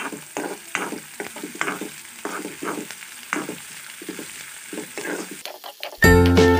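Sliced onions sizzling in hot oil in a black kadai, stirred with a metal spoon that scrapes against the pan two or three times a second.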